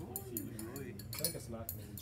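Light glassy clinks and ticks as a white solid is tipped from a small container into a glass flask and the glassware touches, under faint voices.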